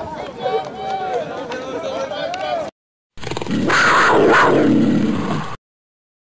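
Voices talking from the sideline, then, after a short silent gap, about two seconds of loud, dense noise that cuts off suddenly.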